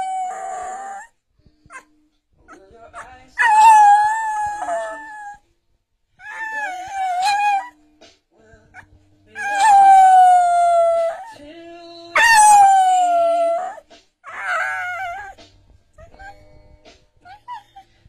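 English bull terrier howling along in a string of about six long, drawn-out howls separated by short pauses, several sliding down in pitch as they end: the dog's 'singing'.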